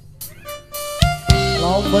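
A live dangdut band kicking in: a few light clicks, then about a second in the drum kit and band hit together twice, and the full band carries on with a held melody line over a steady bass.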